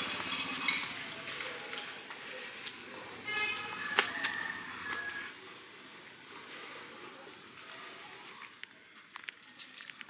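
Faint outdoor background with distant voices. About three seconds in there is a brief high-pitched call, and a sharp click comes about four seconds in.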